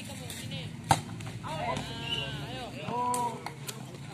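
A hand striking a volleyball with one sharp slap about a second in, and a couple of fainter knocks near the end, over scattered calls and shouts from players and onlookers.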